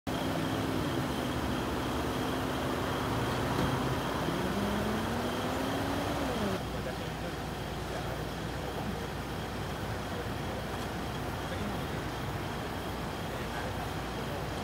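Street traffic noise with a motor vehicle engine running. The engine holds a steady pitch, then rises for about two seconds and breaks off about six seconds in. After that comes a steadier, quieter background of traffic noise.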